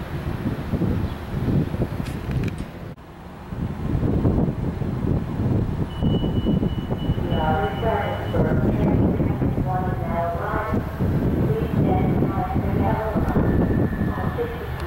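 Low rumble of trains on the line: a freight train of tank cars and boxcars rolling along the rails, then, after a sudden cut about three seconds in, an approaching VRE commuter train. From about seven seconds in, a choppy voice-like sound rides over the rumble.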